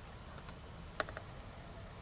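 Laptop keyboard keys pressed: a few short, quiet clicks, the sharpest about a second in, as the Windows key and the 1 key are pressed together to trigger a hotkey.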